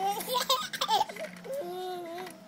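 Baby laughing in short, choppy bursts for about the first second, then a longer held vocal sound near the end.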